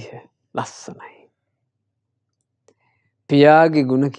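Speech only: a man talking in short phrases, with a pause of about two seconds in the middle.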